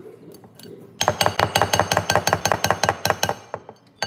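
Metal whisk beating batter in a glass mixing bowl: rapid, even clinking against the glass, about nine strokes a second, starting about a second in and stopping near the end.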